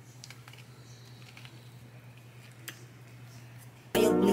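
Faint scraping and soft clicks of a metal spoon scooping the gills and stem out of a mushroom cap, over a low steady hum. Loud music cuts in at the very end.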